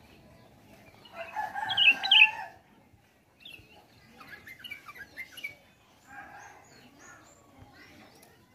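Caged sooty-headed bulbuls singing in bursts of quick, chattering notes, with one louder, drawn-out call about a second in.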